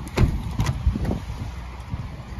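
Toyota C-HR rear door being opened by its handle: a few knocks and clunks from the latch and door within about the first second.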